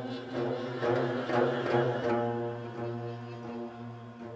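Korean traditional orchestra playing a slow passage of sustained held tones, swelling to a fuller, louder sound in the middle and then thinning and fading.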